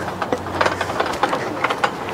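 Irregular clicking and clanking of metal playground climbing equipment, the hanging rings and ladder knocking on their fittings as a man climbs and grabs them.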